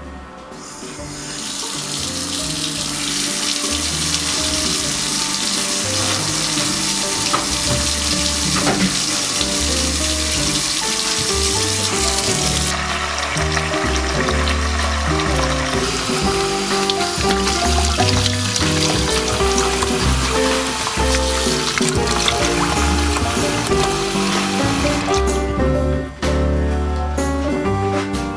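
Water running steadily from a mixer tap into a plastic basin in a washbasin, starting about a second in as the tap is turned on.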